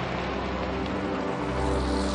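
Motor vehicle engines running steadily: a continuous low hum with a rushing noise over it.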